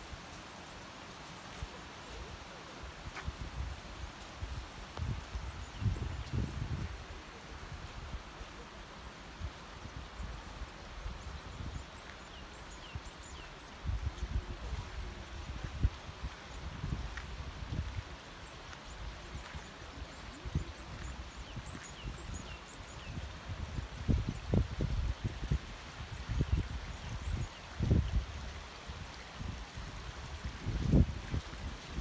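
A shallow mountain stream flowing steadily over rocks, with irregular gusts of wind buffeting the microphone every few seconds.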